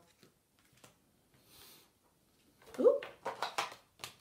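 Paper flashcards being handled and swapped on a wooden table: faint clicks and a soft rustle, then near the end a brief rising voice sound and a quick run of light taps.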